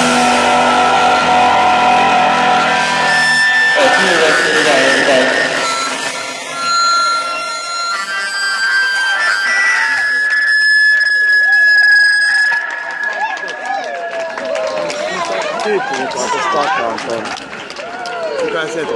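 A live psychedelic rock band with electric guitars, drums and bass playing for about three and a half seconds, then the drums and bass stop and the guitars ring on with a held high tone that cuts off about twelve seconds in. People's voices come in over the ringing and carry on after it stops.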